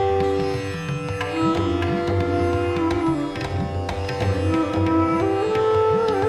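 Background music with an Indian classical character: a plucked-string melody of held notes that slide from pitch to pitch over a steady low drone.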